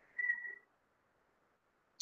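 A faint, brief high whistle-like tone lasting about half a second, then near silence.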